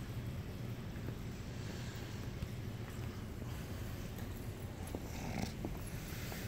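Steady low hum of room noise, with a few light footsteps on a hard floor near the end.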